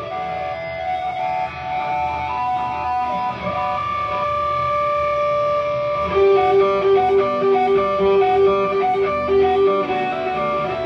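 A live rock band playing an instrumental song intro on electric guitars and bass. Held, ringing guitar notes come first, then about six seconds in a louder repeating picked guitar figure comes in.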